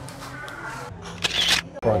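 Indistinct chatter of people in a small shop over a low hum, then a brief loud rustle just over a second in, before a man starts to speak.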